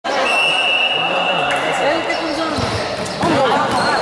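A futsal ball struck and bouncing on the hard court of an echoing gymnasium, several short knocks, under voices shouting in the hall. A steady high tone sounds for about the first two seconds.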